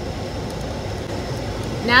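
Steady rumble and hiss of a car heard from inside its cabin, with nothing else standing out.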